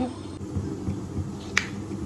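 Kitchen knife slicing a peeled potato on a wooden chopping board: soft knocks, then one sharp click of the blade meeting the board about one and a half seconds in.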